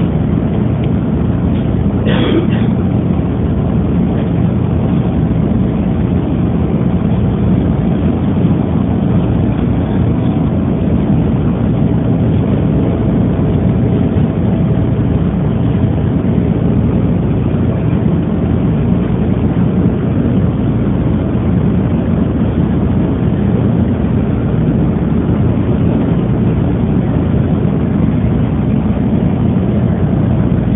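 Steady rumble of a passenger train car running along an elevated track, heard from inside the car. A faint whine rides on it for several seconds in the middle.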